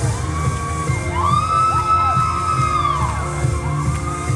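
Pop dance music with a steady beat echoing in a large hall. A long high vocal note is held over it from about one to three seconds in, with shorter ones before and after.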